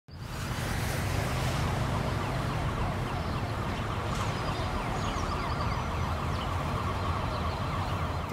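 Emergency vehicle siren wailing over a steady low traffic rumble. It fades in within the first half-second and then holds at an even level.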